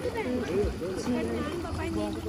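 Speech only: voices talking back and forth, with a short "yeah".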